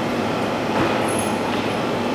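Steady, loud noise like a hiss, with no distinct events in it.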